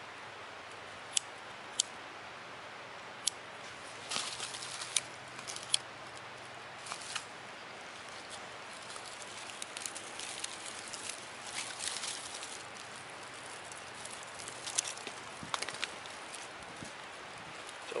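A handheld lighter clicks sharply a few times as it is struck against birch bark. Once the bark catches, it crackles as it burns, and dry twigs rustle and snap as they are laid onto the small flame.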